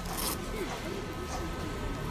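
Outdoor street ambience with faint background voices, and a brief rustling scrape near the start, like clothing or equipment being handled.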